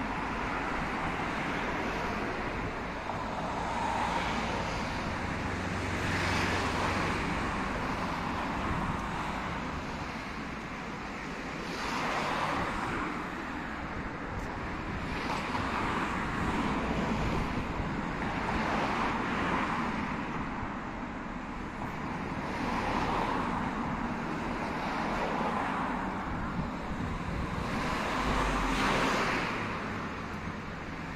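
Road traffic: cars passing one after another on the adjacent roadway, each one a tyre-and-engine noise that swells and fades every few seconds over a steady background hum.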